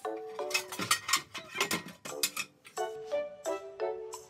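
Background music of short, bright pitched notes, with a cluster of sharp clinks, like kitchenware being handled, between about half a second and two seconds in.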